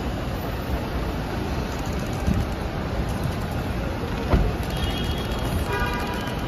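Steady traffic rumble from vehicles at a kerbside pick-up lane. There is a single thump about four seconds in, and a short, steady, high pitched tone near the end.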